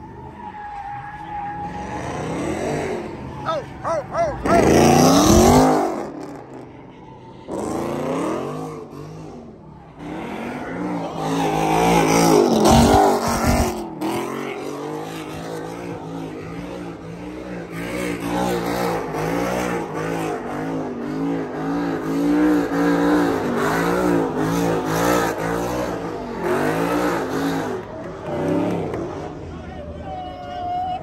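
Cars spinning donuts with tyres squealing, engines revving up and down over and over. The sound swells loudly as a car sweeps close about five seconds in and again around twelve seconds in, then settles into a steady rise and fall of revs about once a second.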